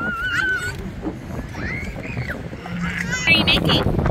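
Young children's high-pitched voices calling out in short, wavering and rising-falling cries, over a low, steady outdoor rumble.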